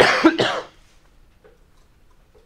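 A man coughing: two quick coughs run together, loud and sharp, over in well under a second near the start, then quiet.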